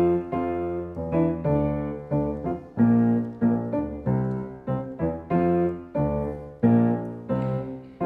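Grand piano playing a steady run of struck chords over a bass line, about two and a half chords a second. The pattern repeats about every four seconds.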